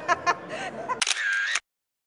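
A photo booth camera's shutter sound about a second in, after a moment of voices and laughter. It cuts off suddenly after about half a second.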